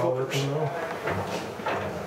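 Indistinct voices talking in a room, with no clear words.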